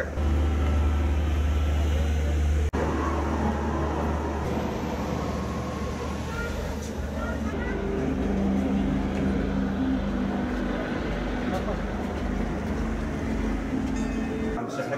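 Outdoor harbour ambience: a steady low rumble, heaviest for the first few seconds and cut short by a click, under faint background voices.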